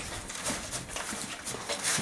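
Two horses eating loose grain from a feed tub, their lips and muzzles working over the bottom: a run of small irregular crunches and clicks.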